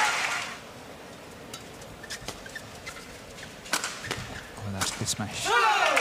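Crowd cheering dies away in the first half second. A quieter stretch follows, broken by a few sharp clicks. Near the end comes a loud, falling, warbling vocal sound.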